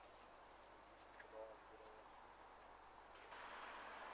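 Near silence: faint outdoor ambience with a brief faint call about a second and a half in, and a steady hiss that comes in suddenly near the end.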